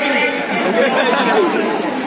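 Speech only: a man's voice with other voices talking over it.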